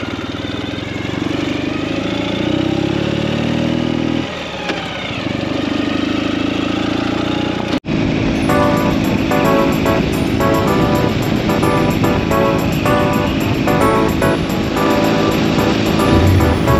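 Motorcycle engine pulling away on a gravel road: its pitch climbs, drops at a gear change about four seconds in, then runs on steadily. After a brief cut about eight seconds in, background music with evenly repeating notes takes over.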